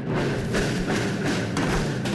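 A student marching band's drum section playing in the street: bass drums and tenor drums beating out a quick, steady march rhythm of several strokes a second.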